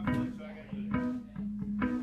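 Electric guitar playing a repeated low, plucked riff, about two notes a second over a steady droning tone.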